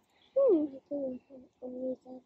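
A bird cooing: a long falling note, then a run of about five short, low, steady notes.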